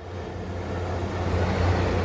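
Large industrial garage exhaust fan running, a steady rush of air over a low hum, growing slightly louder. The city says a faulty sensor that controls when it turns on and its speed keeps it from operating as it should.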